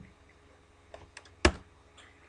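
A few keystrokes on a computer keyboard: quick clicks about a second in, then a single louder key press about a second and a half in.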